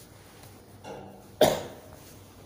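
A person coughs once, sharply, about a second and a half in, preceded by a softer sound.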